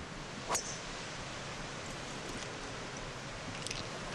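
A golf club strikes the ball on a tee shot: one sharp click about half a second in, followed by a steady outdoor background hiss.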